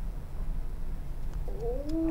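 A cat meows once near the end, a short rising call, over a steady low hum.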